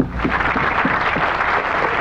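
Audience applauding steadily, starting suddenly as a performer is announced and walks on stage.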